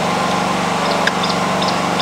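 A small engine running steadily with an even drone, with a few faint, short high chirps in the middle.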